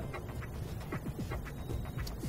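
Low steady hum of electronics-factory machinery on a running production line.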